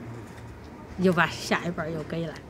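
A woman speaking Chinese, starting about a second in, over a faint steady low hum.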